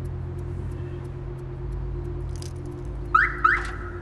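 A car alarm chirps twice in quick succession near the end, two short rising tones, over a steady low hum.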